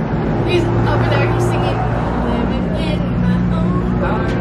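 Steady traffic noise from a nearby road, with a vehicle engine's low hum, under faint voices.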